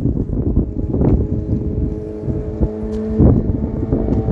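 Wind buffeting the phone's microphone in low rumbling gusts. About a second and a half in, a steady hum of several held tones comes in underneath and keeps going.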